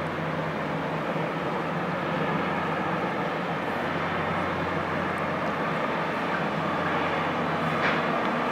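Tug's diesel engines running steadily as the tug-barge passes close by, a low even drone.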